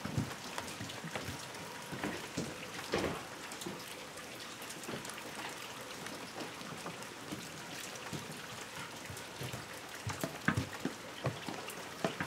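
Quiet room tone: a steady low hiss with scattered faint ticks and a couple of soft knocks, about three seconds in and again near the end.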